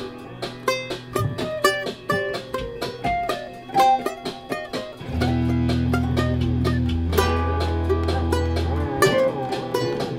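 Ukulele and guitar music layered with a loop station and effects: a run of short plucked notes, joined about five seconds in by long held low bass notes underneath, with wavering notes above them.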